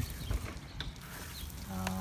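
Dry plant roots and dead grass crackling and rustling as they are handled and pressed into damp compost soil, a scatter of small clicks.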